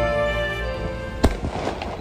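Background music with held notes for about the first second, then a single sharp firework bang about a second and a quarter in, followed by a few smaller pops and crackle.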